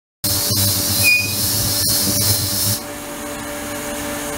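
Ultrasonic tank running with a bottle immersed in the churning water: a steady hiss with a low hum beneath, cutting in just after the start, with a couple of sharp clicks. The high hiss drops away about three quarters of the way through while the hum carries on.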